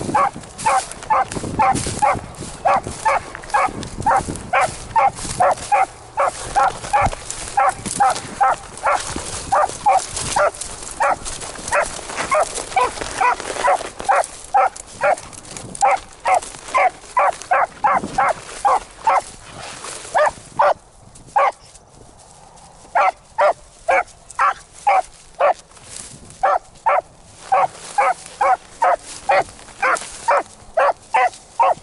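A beagle baying in short, quick barks, about two to three a second, as it trails a rabbit's scent through brush. The barking breaks off for a moment about two-thirds of the way in, then picks up again. A rushing noise runs under the barks in the first half.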